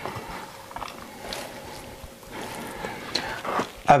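Faint, soft handling sounds of fingers pushing diced mozzarella into a pocket cut in a raw beef cut, with a few light knocks near the end as a ceramic bowl is handled.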